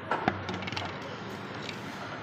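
Plastic soda bottle pushed into a reverse vending machine's intake, knocking and clattering against the chute in a few sharp knocks, mostly in the first second. A low steady hum runs underneath.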